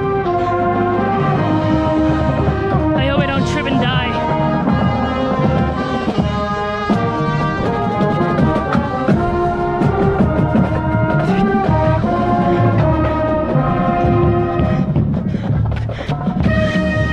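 High school marching band playing its show music: brass chords with a trombone close to the microphone, over a front-ensemble percussion section of bass drum, gong and marimbas, held notes and chords changing every second or so.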